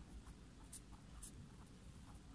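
A pen writing on paper: faint scratching of a few short pen strokes.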